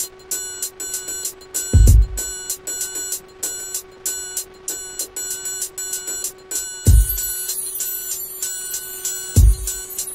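Electronic beat playing from a Native Instruments Maschine mk3: a rapid, even run of short pitched bell-like percussion hits over a held low tone, with three deep kick drums that drop in pitch. About seven seconds in, a hissy high percussion layer joins.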